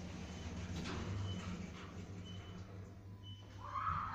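Otis Genesis lift car running with a steady low hum, and a short high beep repeating about once a second. Near the end a distant voice-like wail rises.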